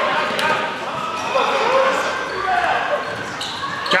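A basketball bouncing on a hardwood gym floor a few times, with voices in the background, all echoing in a large gymnasium.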